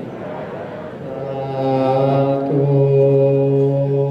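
Buddhist chanting by low voices in a steady, held monotone. It is softer for the first second, then fuller and sustained.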